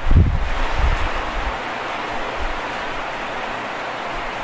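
A steady rushing, hiss-like noise with no pitch, with a low rumble in the first second and a half.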